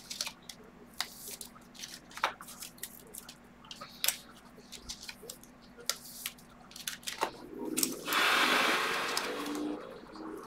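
Trading cards and clear plastic card holders being handled: scattered light clicks and taps, then a louder rustle lasting about two seconds near the end.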